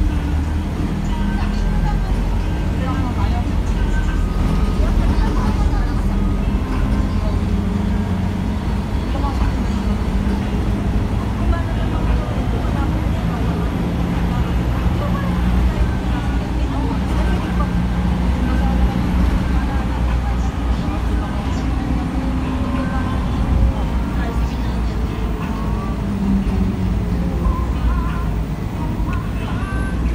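Cabin noise of a Scania K310 city bus: the continuous low rumble of its diesel engine and running gear, with engine tones that drift up and down in pitch.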